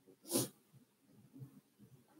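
A person's single short, sharp breath about a third of a second in, followed by faint low scattered sounds.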